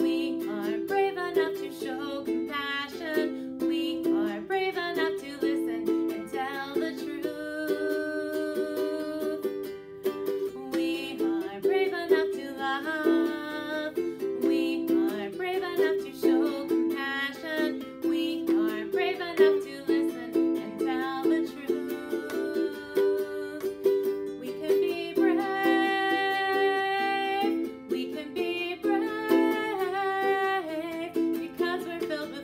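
Ukulele strummed in a steady rhythm, accompanying a woman singing a children's song.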